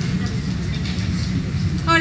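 A steady low rumble of background noise picked up through the open microphone, with no clear speech.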